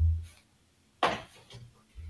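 A short dull thump, then a brief breathy burst about a second later.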